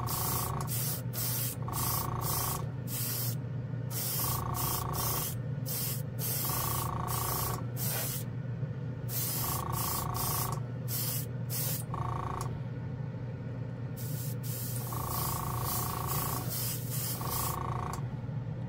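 GSI Creos PS-289 airbrush with a 0.3 mm needle spraying metallic paint in repeated short bursts of hissing air as the trigger is pressed and released, several bursts carrying a whistling tone. A steady low hum runs underneath.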